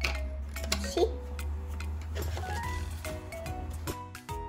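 Background music with a steady low hum, over light clicks and clinks of a prepared slide being handled and fitted into a plastic pocket microscope. A brief child's voice sounds about a second in.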